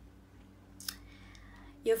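Quiet room tone in a pause of a woman's talk, with one short mouth click about a second in; her speech resumes near the end.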